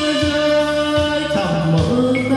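Karaoke backing music for a Vietnamese ballad: a held melody line over a soft, steady bass beat, shifting to a lower note past the middle.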